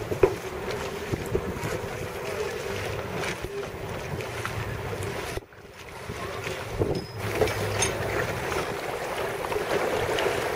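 Wind buffeting an outdoor microphone over choppy water lapping around small sailing boats. The sound dips briefly about halfway through.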